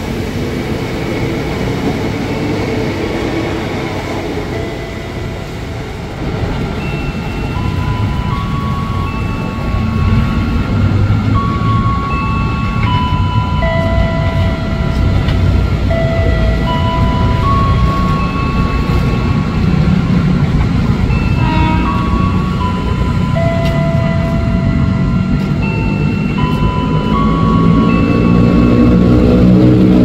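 Electric commuter train running out along the platform track, then a second train rumbling in and growing louder near the end, where its motors add a low hum. A slow tune of single held notes plays over the train noise from several seconds in, and a brief clatter comes about two-thirds of the way through.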